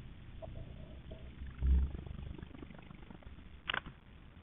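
Quiet room noise from a desk microphone, with a short low thump about halfway through and a single sharp click near the end.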